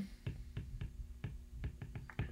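Stylus tapping on a tablet's glass screen during handwriting: a quick, irregular run of light clicks, about five a second.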